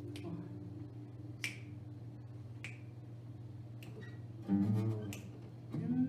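Finger snaps keeping time, about one every 1.2 seconds, over a softly ringing acoustic guitar chord that fades. A fuller chord is strummed about two-thirds of the way through and again near the end.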